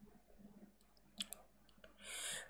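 Near silence with two faint clicks in quick succession a little over a second in, from a computer mouse as the next quiz question is brought up on screen.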